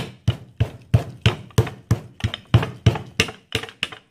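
A wooden rolling pin beating a slab of clay down on a canvas cloth: a steady run of sharp knocks, about three a second, stopping at the end.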